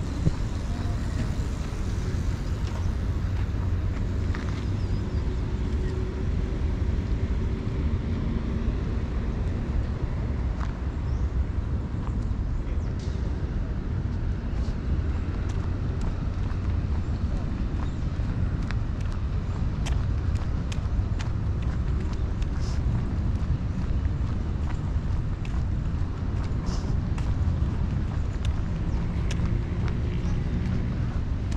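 Outdoor ambience on a walk through a city park: a steady low rumble with faint voices of people passing and scattered short, sharp clicks.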